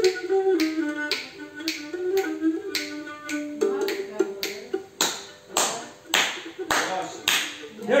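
Cretan lyra bowed in a wavering folk melody in its low-middle range, over a steady beat of sharp clicks about twice a second. The lyra drops back about halfway through, leaving the clicks more prominent.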